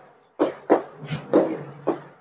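Chalk writing on a blackboard: a run of quick taps and scrapes about three a second, with one sharper, higher scratch a little past the middle.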